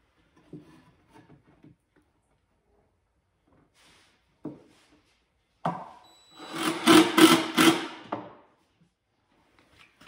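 Cordless drill driving a screw into two-by-four lumber: a short burst, then about two seconds of steady running as the screw is sunk, around six to eight seconds in. Light knocks of the boards being handled come before it.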